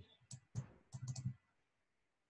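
A few faint clicks in the first second and a half, made while the word "why ?" is hand-drawn onto a chart on a computer screen.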